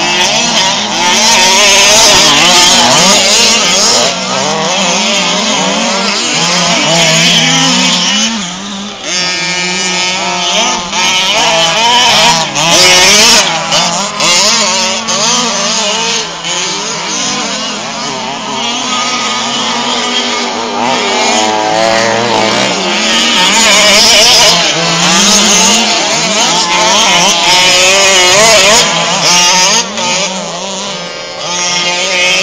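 Several 1/5-scale gas RC trucks' small two-stroke engines running loud, revving up and down constantly in overlapping, wavering pitches as they race.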